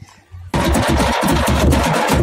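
A group of drums starts playing suddenly about half a second in: loud, fast beating on large hand-held and kettle-shaped drums struck with sticks.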